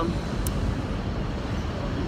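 Low, steady rumble of city street traffic, with one brief click about half a second in.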